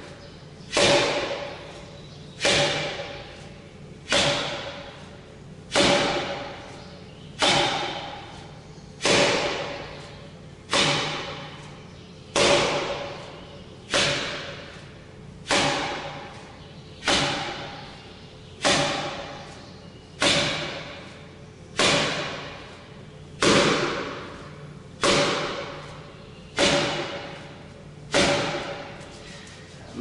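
A forearm striking a 'Kamerton Shilova' makiwara (striking post) in forearm-conditioning drills. There are about eighteen even blows, one roughly every second and a half. Each blow is a hard thud that rings briefly and dies away.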